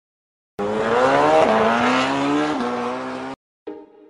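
An engine revving up hard under acceleration, its pitch climbing and dropping twice at gear changes, then cut off suddenly. After a brief silence, music with a beat starts near the end.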